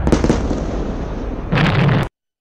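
Explosions: a dense, rumbling crackle with sharp bangs, growing louder near the end.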